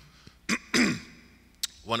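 A man clears his throat once at the microphone: a short, rough burst about half a second in.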